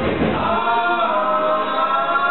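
Live band's drums and bass cut out about half a second in, leaving several male voices singing together unaccompanied, holding long sustained notes in harmony.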